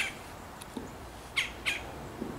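A bird calling twice, two short sharp chirps about a third of a second apart, near the middle of a quiet pause.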